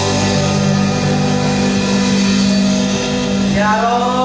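Live worship band holding a steady sustained chord on electric bass and electric guitar. A voice comes in near the end.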